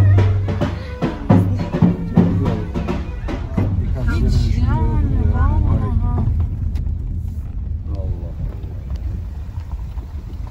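Traditional folk music with drum beats and a wavering reed or voice melody over a steady low vehicle rumble. The music fades after about six seconds, leaving the rumble.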